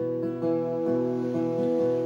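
Acoustic guitar being strummed, its chords ringing with a few fresh strums.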